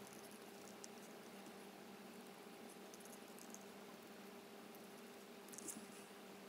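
Near silence, with a faint steady hum and a few soft snips of small scissors cutting card and paper, the clearest near the end.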